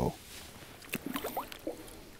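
Small walleye released back down an ice-fishing hole: a few faint splashes and sloshes of water, clustered about a second in.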